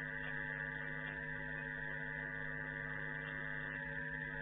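Steady electrical mains hum with a higher buzz, several constant tones that do not change.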